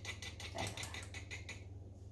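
Small wire whisk clicking quickly against the sides of a small metal saucepan as teff batter is whisked, about seven clicks a second, stopping about a second and a half in. A steady low hum runs underneath.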